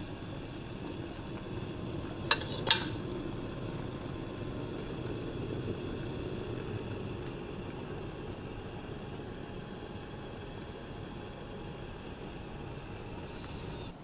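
Cherry syrup boiling in a stainless steel saucepan, a steady bubbling hiss. A metal spoon stirs it and clinks twice against the pan a little over two seconds in.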